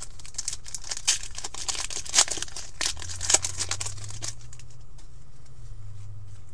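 A trading card pack wrapper being torn open and crinkled by hand: a run of crackling and rustling for about four seconds, with a few sharper crackles, then it goes quiet.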